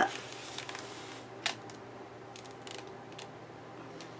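A paperback coloring book being opened and its pages and a thin translucent sheet handled, with one sharp click about a second and a half in and a few faint paper rustles later.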